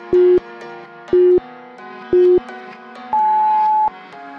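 Workout interval timer countdown: three short, low beeps a second apart, then one longer, higher beep about three seconds in, signalling the start of the next work interval. Background music plays underneath.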